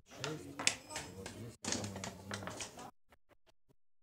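Backgammon checkers clicking against the board and each other as a player moves pieces, several sharp clicks over the first three seconds, with low talking underneath; near the end only a few faint ticks.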